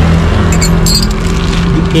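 A motor vehicle engine idling with a steady low hum, with a few light clicks about a second in.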